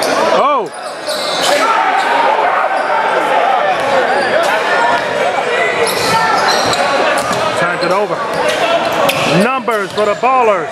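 Live basketball play in a gym: a ball bouncing on the hardwood court amid players' footsteps, with voices from players, benches and spectators ringing in the hall.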